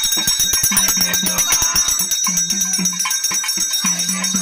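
Pambai melam temple drumming: fast, dense drum strokes through the first two seconds, with a recurring low drum note that bends in pitch, and a brass hand bell ringing continuously over it.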